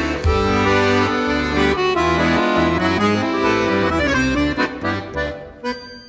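Piano accordion played solo: sustained chords over a stepping bass line, thinning out and getting quieter near the end.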